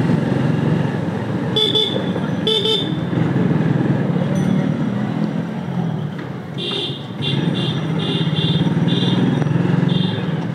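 Motorcycle engine running steadily while riding at low speed, with two short horn toots a couple of seconds in. In the second half comes a rapid series of short, high-pitched toots, several a second.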